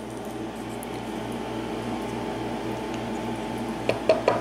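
Steady low mechanical hum of the room background with a faint regular pulse, and a small click just before the end.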